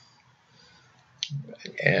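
A pause in a man's speech: faint room tone, then a single short click a little past halfway, after which his voice comes back in.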